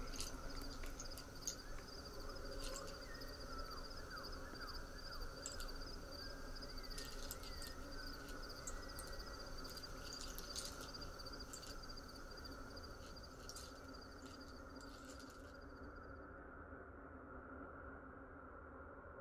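Crickets chirping in a steady pulsing trill, with a few short bird calls and scattered faint clicks over a faint steady drone. The trill stops about fifteen seconds in and the sound fades away.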